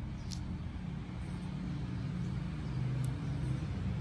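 A steady low mechanical hum in the background, with two faint sharp clicks, one near the start and one about three seconds in.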